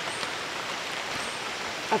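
Rain falling steadily: an even hiss.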